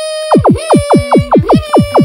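Synthesized cartoon sound effect: a held electronic tone with a rapid run of steeply falling zaps, about five a second.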